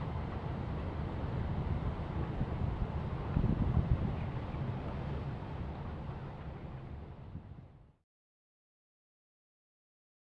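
Outdoor wind noise buffeting the microphone as a steady low rumble, swelling briefly about three and a half seconds in, then fading out about eight seconds in.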